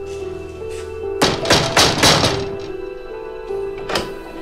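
A quick series of knocks on a wooden door about a second in, over background music with long held notes. Near the end comes a single sharp metallic click as a sliding door bolt is drawn back.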